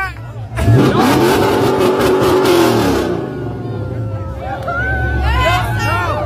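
2023 Dodge Scat Pack's 6.4-litre HEMI V8 revved about half a second in, its pitch rising and then falling back to a steady rumble over a couple of seconds, while it runs on plastoline, a fuel made from plastic. Crowd voices and shouting are heard with it.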